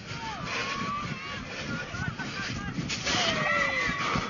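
Scattered shouts and calls from rugby league players and spectators over a steady background hiss, getting louder about three seconds in.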